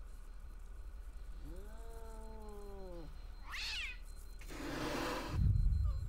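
A cat yowling: one long cry that rises and then falls, followed by a shorter, higher cry. A burst of hissing noise and a low thump come near the end.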